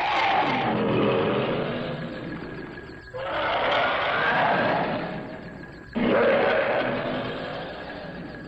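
Giant monster (kaiju) roaring three times, each roar starting suddenly and fading over about three seconds.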